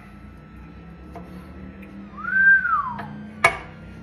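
A single whistled note about a second long, rising and then falling, in the middle, then a sharp knock near the end as a knife cuts through a smoked pork chop onto a wooden cutting board. A faint steady hum runs underneath.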